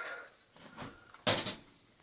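A short clatter of a few quick knocks about a second and a quarter in, from hard computer parts being handled or set down.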